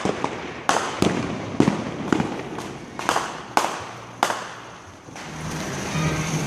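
Fireworks going off: about eight sharp bangs over the first four seconds, each trailing off in an echo, then a quieter stretch near the end.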